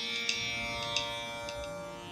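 Indian classical drone accompaniment for vocal practice: a steady held drone with light plucked-string strokes every fraction of a second, fading slightly, in the pause between sung sargam phrases.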